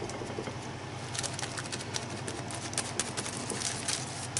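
Sponge applicator dabbing paint through a stencil onto a paper journal page: a run of quick, soft, scratchy taps starting about a second in, over a low steady hum.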